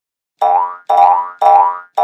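Cartoon-style springy 'boing' sound effects: four short pitched twangs about half a second apart, each bending slightly upward and fading away, the last starting near the end.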